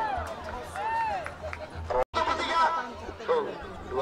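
A man's voice calling out with long, drawn-out rising and falling tones, over crowd chatter, with a brief break in the sound about halfway through.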